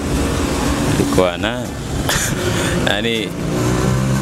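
A motor vehicle engine running close by, a steady low rumble, with a couple of short spoken murmurs over it.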